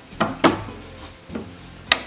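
Hinged plywood cabinet door swung shut by hand: a few light wooden knocks, then a sharp click just before the end as it snaps into its magnetic catch.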